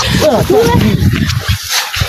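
Several people shouting and yelling over one another, with cries that rise and fall in pitch. It dies down near the end.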